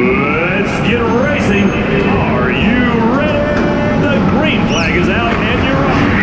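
Several go-kart motors whining, their pitches gliding up and down and overlapping as the karts speed up and slow down, over a steady rushing noise of the karts on the track.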